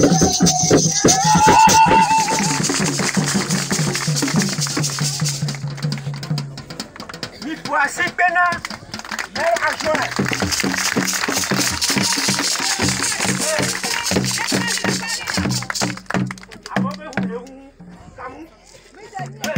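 Live hand drumming with shaker rattles: a steady rattling hiss over a regular low drumbeat. Voices sing over it at the start and again about eight seconds in, and the music thins out near the end.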